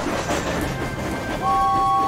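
Cartoon steam locomotive running along, a hiss of steam and rail noise under background music. About one and a half seconds in, a held two-note tone sets in.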